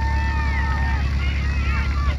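Open-air ballfield sound: distant voices calling out in held and gliding tones over a steady rumble of wind on the microphone.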